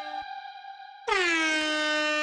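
Air horn sample (a "blow horn" sound effect) in a beat, starting about a second in: its pitch drops briefly and then holds as one long, loud blast. Before it, a held melodic note fades out.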